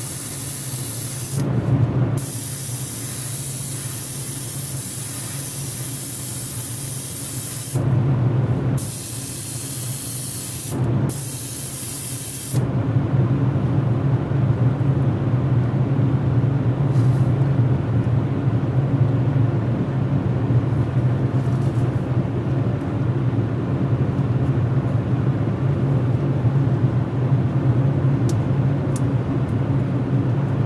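Airbrush spraying paint onto a small plastic model part: a hiss that breaks off briefly three times and stops about twelve seconds in. A steady low hum runs underneath throughout and grows louder once the spraying stops.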